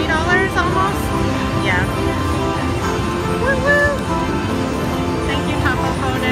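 Rising Fortunes slot machine playing its bonus-win celebration music during a Top Up Bonus payout: layered sustained tones with short gliding, chirping melodic figures.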